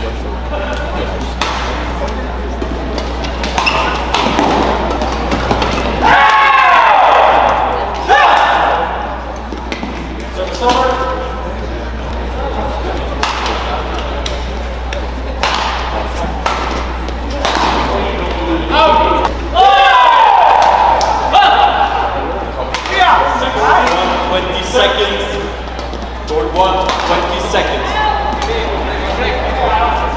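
Badminton rallies: rackets striking the shuttlecock in sharp, repeated cracks, with court shoes squeaking in short sliding glides during two of the rallies. Voices are heard between the strokes.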